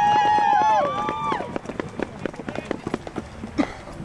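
Marching band brass and winds holding a loud sustained chord that cuts off about a second in, several parts falling in pitch as they release. After it come scattered irregular claps and clicks and a short shout near the end.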